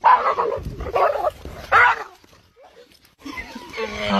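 Dog barking three times, about a second apart.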